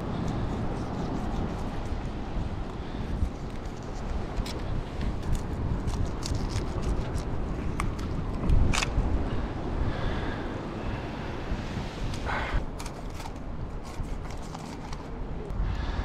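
Steady wind and sea rumble at the cliff base, with scattered short clicks and scrapes from a filleting knife cutting a pink snapper against rock, and a couple of louder scrapes about halfway and three-quarters through.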